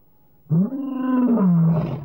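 A lion's roar used as a sound logo: one long call starting about half a second in, rising in pitch, holding, then falling away near the end.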